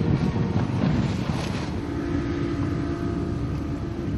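Outboard motor of a rigid inflatable boat running at speed, with rushing spray and wind buffeting the microphone. A steady engine drone comes through about halfway in.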